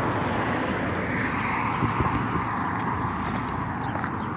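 Steady road traffic noise, with footsteps on the pavement.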